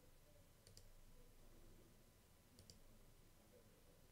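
Near silence with two faint computer mouse clicks, one just under a second in and another about two seconds later, each a quick pair of ticks.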